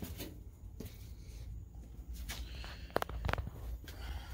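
Footsteps and phone-handling noise in a small room over a low steady hum, with a few sharp clicks and knocks about three seconds in.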